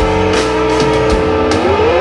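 Live rock band playing: an electric guitar holds one long note that rises in pitch near the end, over drums and cymbal hits.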